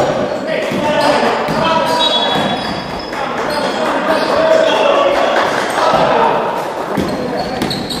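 Basketball game in a large sports hall: a basketball bouncing on the wooden court, players' voices calling out, and short high squeaks scattered throughout, all carrying the hall's echo.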